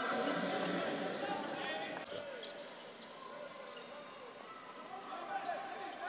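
Basketball arena sound during play: a ball bouncing on the hardwood court over steady crowd noise in a large hall.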